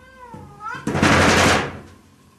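A cat meows once with a bending pitch, then a loud, harsh noisy burst follows and lasts about a second.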